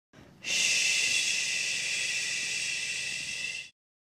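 A long, steady 'shhh' shush, held for about three seconds and then cut off.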